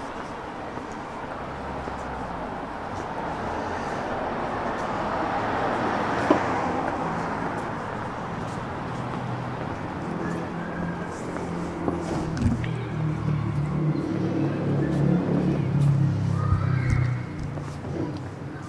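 Street traffic: a vehicle goes past, loudest about six seconds in. Later a nearby engine runs with a low, uneven rumble that grows louder and then drops away just before the end.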